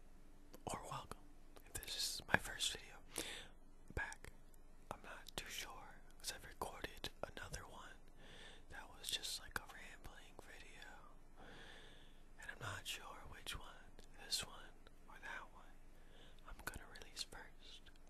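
A person whispering softly, with short pauses between phrases.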